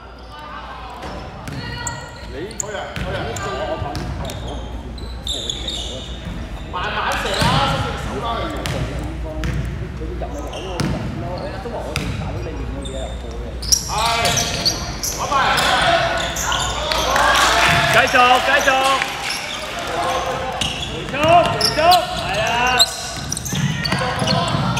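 Basketball game sounds on a hardwood court: the ball bouncing in repeated sharp knocks, with players and coaches shouting. The shouting grows busier and louder in the second half.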